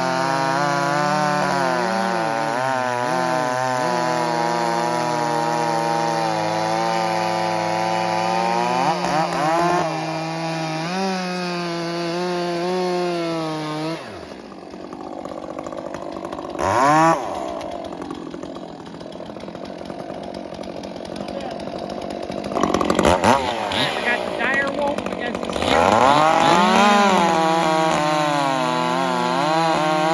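Two chainsaws, a ported Echo CS-590 with a loud hammerhead pipe and a stock Stihl MS 400 C, run at full throttle cutting through a log together. About 14 s in one saw drops out and a single saw carries on cutting, more quietly, with a brief rev. Near the end both are cutting at full throttle again.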